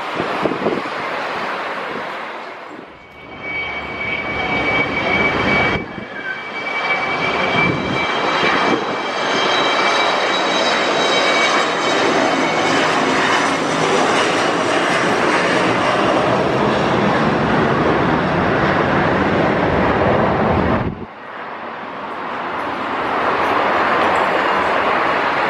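Airliner jet engines at takeoff power: a Boeing 737-700 BBJ's CFM56 turbofans climbing away, then an Embraer ERJ 145's Rolls-Royce AE 3007 turbofans with a steady high whine over the roar as it takes off. The sound cuts out briefly about three seconds in and again near the end.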